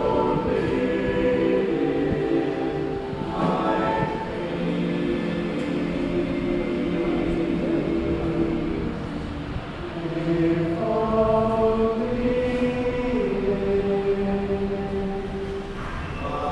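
A men's chorus singing a Christmas carol in harmony, with long held notes.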